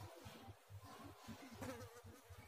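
Near silence: faint room tone with a low, uneven buzz.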